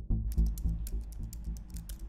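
Keyboard typing sound effect, a quick irregular run of clicks, over background music with a pulsing bass beat.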